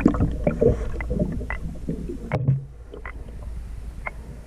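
Scuba diving heard underwater through the camera housing: muffled gurgling of the diver's regulator breathing and exhaust bubbles over a low rumble, with scattered small clicks and knocks. It grows quieter about two and a half seconds in.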